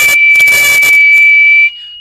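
A man whistling one steady note close into a small condenser mic, with a rush of breath on the mic, over the steady, slightly higher tone of a piezo buzzer. The buzzer is driven near its resonance by a waveform generator. The whistle stops near the end while the buzzer tone carries on.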